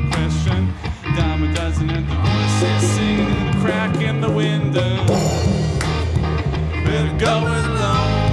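Live rock band playing: electric guitar over bass and drums, with a cymbal crash about five seconds in.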